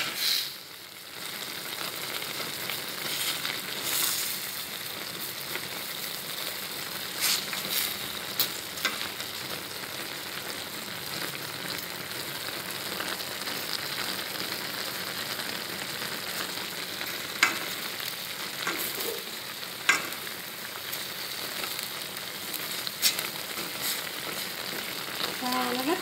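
Eggplant and minced pork sizzling steadily as they are stir-fried in a stainless steel pan with wooden chopsticks, with a few sharp clicks along the way.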